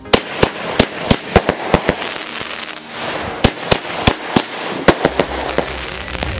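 Consumer firework cake firing: a rapid string of sharp bangs, about four a second. About two seconds in the bangs give way to a crackling hiss, and a second string of bangs follows, with the last one just after five seconds.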